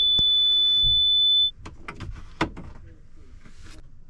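An RV power inverter's alarm gives one long, loud, high-pitched beep that cuts off suddenly about a second and a half in, as power to the system is being disconnected. Scattered clicks and knocks of wiring being handled follow.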